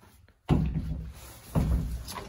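Someone climbing into an old Ford F-250 Highboy pickup's cab: two heavy thumps about a second apart as the body and door knock against the cab.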